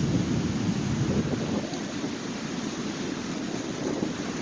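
Steady rush of ocean surf washing onto a sandy beach, mixed with wind buffeting the microphone.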